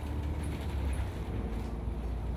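Steady low rumble of a city bus's engine and road noise, heard from inside the passenger cabin.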